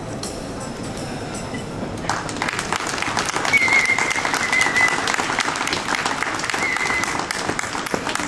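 Audience applause after a musical performance, starting thin and swelling about two seconds in into steady clapping. A short high tone rises over the clapping twice.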